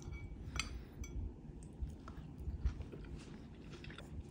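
Faint chewing of a mouthful of pan-seared fish and succotash, with a few light clicks of a metal fork against a ceramic bowl.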